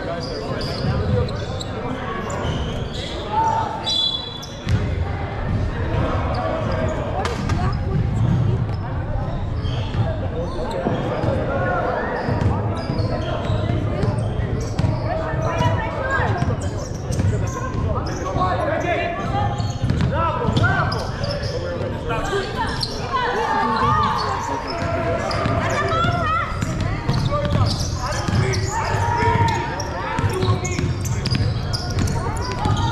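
A basketball being dribbled and bounced on a hardwood gym floor during play, with players' and coaches' voices calling out in a large indoor hall.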